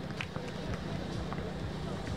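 Outdoor 3x3 basketball game sounds: short sharp squeaks and knocks scattered through, from players' shoes and the ball on the court, over a steady low hum.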